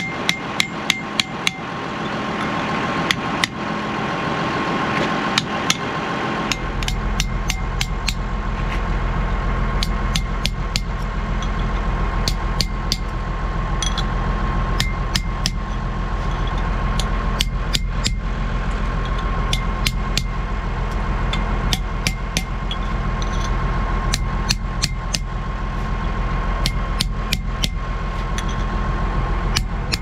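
A hammer striking a punch, tapping a new wheel-bearing race down onto a tractor half shaft: quick runs of sharp metal-on-metal taps, in irregular clusters throughout. A steady engine hum runs underneath, and its low rumble grows louder about six seconds in.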